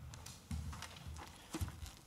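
Faint footsteps, a few irregular soft thuds and clicks, as a person walks up to the lectern.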